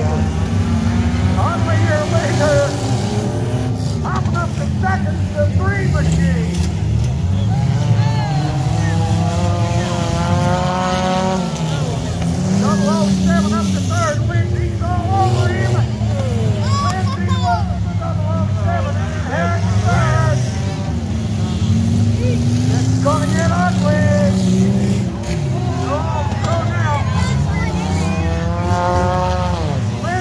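Several race car engines running and revving as the cars race round a dirt figure-8 track, their pitch rising and falling over and over as they speed up and slow down.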